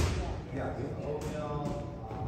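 Boxing gym background: indistinct voices, with a sharp thud at the very start and a couple of fainter knocks later on.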